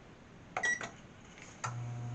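Oven control-panel button pressed with a click and a short high beep, then the oven starts running its proofing function with a steady low hum about a second and a half in.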